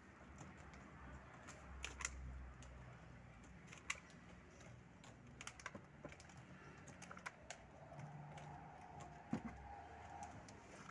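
Faint, scattered light clicks and taps of plastic on plastic as small plastic cups are set into the holes of plastic bucket lids, a few sharp ones several seconds apart.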